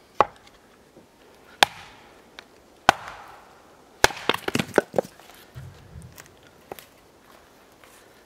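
A hatchet splitting a log of firewood on a wooden chopping block. There are three sharp chops about a second and a half apart, then a quick run of several knocks and clatter about four seconds in.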